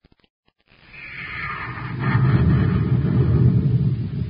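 Radio-drama sound effect of a rocket ship's engines firing for blast-off: a low rushing rumble that starts just under a second in, builds for about a second and then holds steady and loud.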